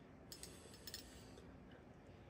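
Near silence, with two small clusters of faint, light clicks about half a second apart.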